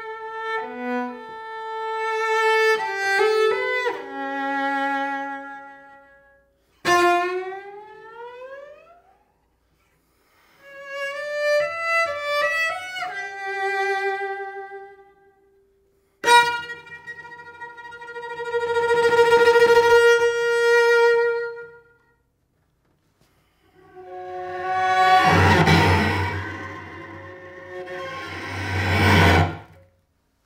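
Solo cello played with the bow in separate phrases broken by short silences. About seven seconds in, a sharp attack slides upward in pitch, and near the end a dense passage swells louder and then cuts off suddenly.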